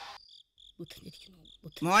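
Crickets chirping: a series of short, high, evenly repeated chirps in an otherwise hushed pause, as a preceding sound fades out at the start.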